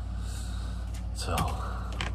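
A man's sharp intake of breath followed by a short spoken "so", over a steady low hum.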